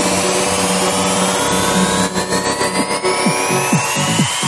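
Electronic dance music in a DJ mix at a build-up: a rising noise sweep climbs through the track, and kick drum beats come back in about three seconds in.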